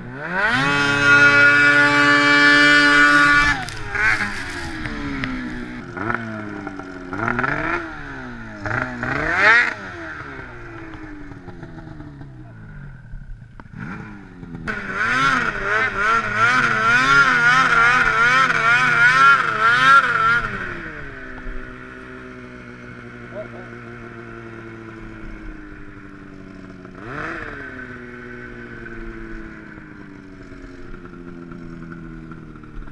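Snowmobile engine revving hard for about three seconds, then rising and falling through a run of throttle changes. Near the middle it is held high again for about five seconds with a wavering pitch, then eases back to a lower run that slowly drops in pitch.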